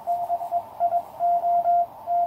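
Morse code (CW) on 20 metres from a QCX mini transceiver: a single mid-pitched tone keyed on and off in dots and dashes, over a faint hiss of band noise.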